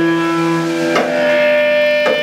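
Live rock band playing loud: held electric guitar chords that change about once a second, each change struck together with a drum hit.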